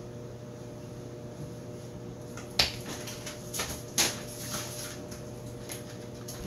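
Cosmetic boxes and containers being handled on a table: a few sharp clicks and taps, the two loudest about midway, over a steady low hum.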